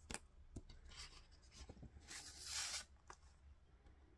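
A 7-inch vinyl EP being slid out of its card picture sleeve: a soft papery rubbing swish about two seconds in, lasting under a second, with a few light clicks and taps of handling around it.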